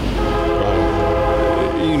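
Train horn sounding one long, steady blast, a chord of several held tones.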